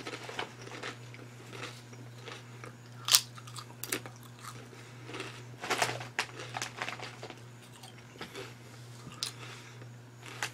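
A person biting into and chewing a crunchy potato chip, with scattered crunches, the sharpest about three seconds in and a cluster near six seconds, over a steady low hum.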